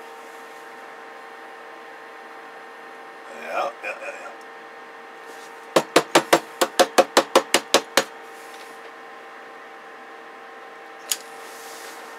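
About a dozen quick taps on the sheet-metal cover of a CB radio, roughly six a second for two seconds, over a steady electrical hum from the bench gear. A brief murmur comes a few seconds in, and a single click near the end.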